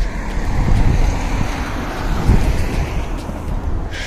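Wind buffeting the phone's microphone outdoors. It comes as an irregular low rumble with a steady wash of noise that swells in the middle.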